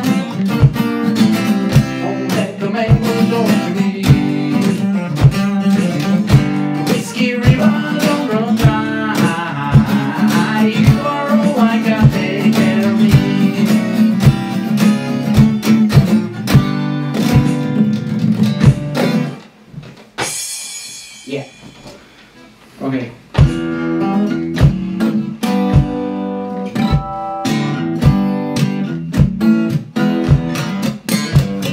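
Strummed acoustic guitar with a sung vocal, over a steady beat of about two strokes a second from a foot-operated pedal drum set. The playing drops away briefly about two-thirds of the way through, then the beat and strumming come back in.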